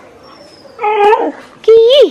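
A small dog whimpering twice in short, high-pitched whines; the second whine ends in a sharp drop in pitch.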